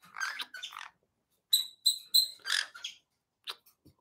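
Pet parrot giving short, high chirps in two brief spells with a short pause between, then a single faint click near the end.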